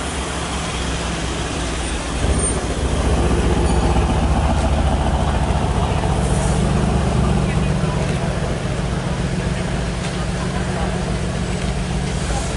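Mercedes-AMG C63 sedan's twin-turbo V8 running at low speed, its deep note getting louder about two seconds in as the car moves off, with a slight rise in pitch around the middle.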